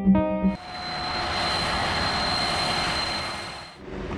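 Background music with sustained keyboard notes breaks off about half a second in. A steady rushing noise with a thin high whine replaces it and fades out just before the end.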